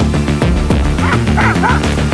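A dog barks several times in quick short yelps, starting about a second in, over loud background music with a heavy beat.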